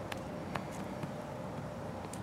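Low, steady outdoor background noise with two faint clicks about half a second apart near the start.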